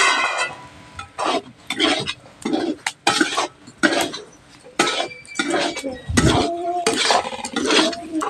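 Metal spatula scraping and knocking against a metal kadhai as potato and soybean curry is stirred and fried, in irregular strokes with short pauses between them.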